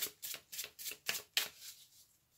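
A deck of tarot cards shuffled by hand, a short papery rasp about three to four times a second, the strokes stopping near the end.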